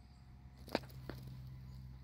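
A faint, steady low hum, with two light clicks about three-quarters of a second and a second in.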